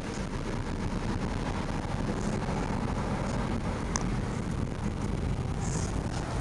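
Steady low rumble of car engine and road noise heard from inside a car's cabin in traffic, with a few faint clicks.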